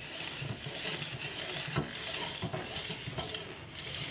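Clear plastic Lomo developing-tank spiral being spun by hand as Super 8 film winds into its groove: a steady plastic-and-film rustle with a few light clicks.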